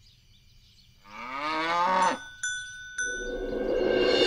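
A cow moos once, a long call rising in pitch, starting about a second in. Two or three bright bell dings follow, and background music comes in near the end.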